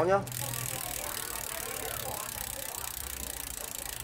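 Rear wheel of a Trinx X1 mountain bike spinning over its 9-speed cassette, the freewheel ticking fast and evenly from a moment in. The drivetrain is running very smoothly.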